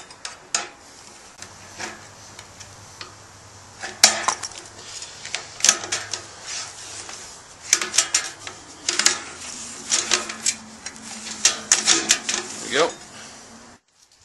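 A screwdriver prying and scraping the rubber gasket out of the channel in a steel .50 caliber ammo can lid: irregular metallic clicks, scrapes and taps that come in clusters.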